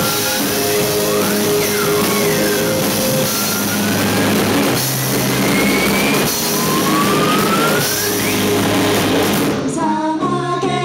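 Live rock band playing loudly: distorted electric guitars and drum kit, with high notes sliding upward over them. The full band stops abruptly near the end.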